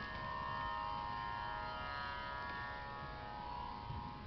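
Harmonium holding a quiet sustained chord at the close of the chant, its reeds sounding steady tones that ease off a little near the end.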